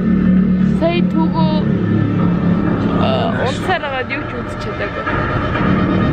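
Loud film soundtrack playing over cinema speakers: music and voices over a steady low drone.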